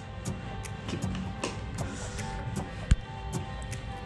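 Background music with held tones over a light, regular ticking beat. A single low thump sounds about three seconds in.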